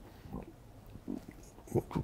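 A man's pause between words: quiet room tone with a few soft breath and mouth noises, a short throat sound about a second in, and an intake of breath near the end just before speech resumes.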